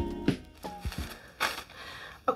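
Background music of plucked notes dying away, then a brief crinkling rustle near the end.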